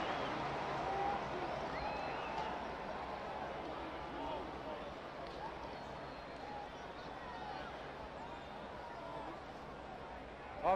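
Stadium crowd noise, a steady wash of many distant voices with scattered faint shouts, slowly dying down after a home-team touchdown.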